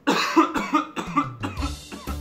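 A man coughs several times in quick succession. About one and a half seconds in, a music beat with a deep bass line starts.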